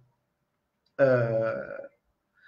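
A man's drawn-out hesitation sound, a single held "uhh" starting about a second in and lasting just under a second.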